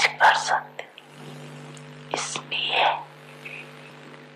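A woman speaking softly and slowly in Hindi into a microphone, in two short phrases with pauses between them, over a steady low electrical hum.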